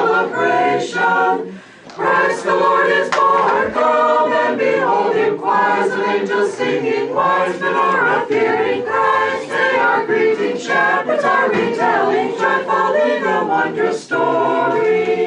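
Small choir of women's voices singing an Orthodox Christmas carol a cappella, with a brief break between phrases about two seconds in.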